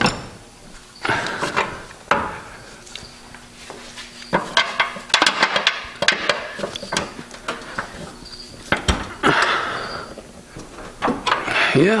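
Hydraulic floor jack being pumped to lift a car's body, with scattered metallic clicks and knocks, thickest in the middle, as the jack and the car take the load.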